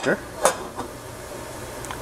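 A stainless steel lid set onto a saucepan of heating water: one short metal clink about half a second in, over a faint steady hiss.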